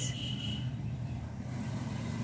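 Steady low background rumble, with no clear strokes or clicks on top of it.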